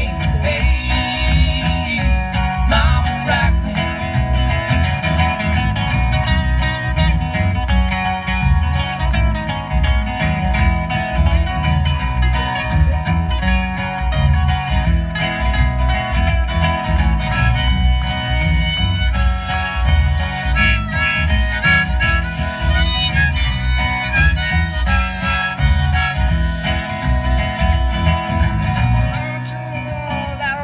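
Live acoustic guitar strumming under a harmonica playing the melody, over a steady bass beat, heard through a PA system. It is an instrumental break with no singing, and the low beat drops out near the end.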